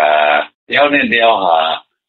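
A man speaking Burmese in two short phrases with a brief pause between them, the recording cut off above the upper frequencies so it sounds dull.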